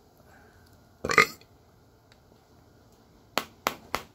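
A man burps loudly once, about a second in. Near the end there are three sharp clicks or taps in quick succession.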